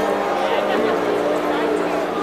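Live electronic dance music from a DJ set, heard from inside the crowd, with steady held synth notes and voices mixed in over it.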